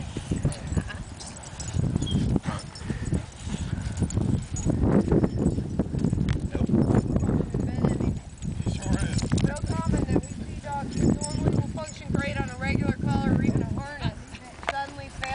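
People's voices and a dog barking now and then, over a low rumbling noise that is strongest through the middle.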